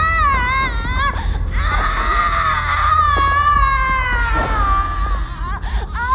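High-pitched wavering cries: a short run of them, then one long cry held for about three seconds, then short rising-and-falling cries near the end.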